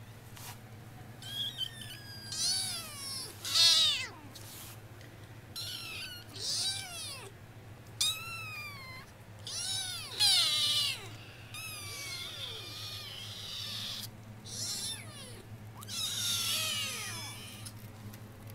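Foster kittens mewing repeatedly: about a dozen high-pitched cries, each falling in pitch, several overlapping at times.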